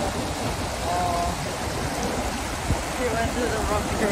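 Whitewater on the Bow River: a steady rush of water pouring over a standing wave in the rapids. Faint voices can be heard about a second in and again near the end.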